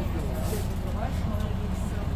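City bus engine idling while the bus stands waiting, a steady low rumble heard from inside the passenger cabin, with faint voices over it.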